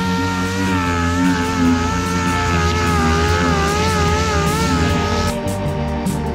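Orbital sander spinning up and running while it is pressed against the epoxy-coated wooden hull bottom, its pitch wavering slightly under load. It cuts off suddenly about five seconds in.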